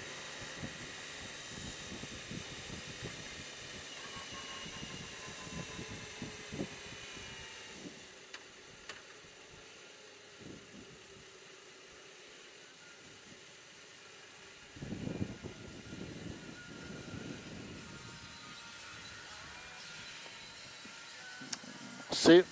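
BMW R18 Transcontinental's big boxer twin running faintly under wind noise on the microphone as the bike rolls slowly in traffic. A louder low rumble comes in about two-thirds of the way through.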